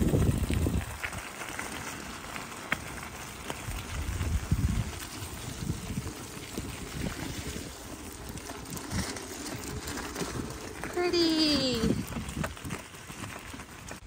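Bicycle tyres rolling and crunching over wet gravel, with wind buffeting the microphone in the first second. Near the end comes a single short vocal sound, falling in pitch.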